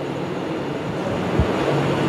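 Steady, even background hiss of room and recording noise, with a single brief low thump about one and a half seconds in.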